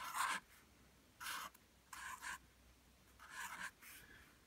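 Marker pen writing on a white sheet, four short, faint scratching strokes as the figure 5 and a percent sign are drawn.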